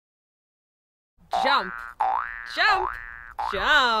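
After about a second of silence, a run of about four cartoon 'boing' sound effects, each a springy wobble in pitch. The last is the loudest and trails off in a falling glide.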